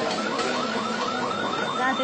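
Shop anti-theft security alarm going off: a rapid electronic warble of short rising chirps, about six a second, starting about a third of a second in.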